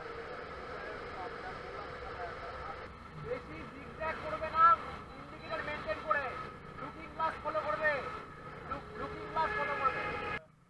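Steady riding noise from a Honda CBR150 motorcycle at highway speed: engine hum and wind rush on a helmet-mounted microphone. From about three seconds in, indistinct voices come and go over it.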